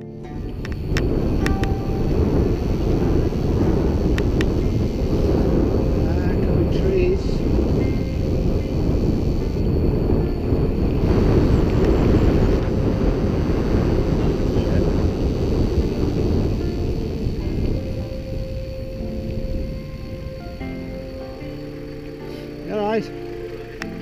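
Wind rushing over the rider's camera microphone with the tyres rolling on tarmac as a mountain e-bike runs fast along a lane. The roar is loud and steady, then eases off about two-thirds of the way through.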